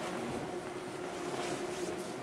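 Station concourse ambience: a steady background hiss with a faint, even electrical hum, and a soft scuff or step near the end.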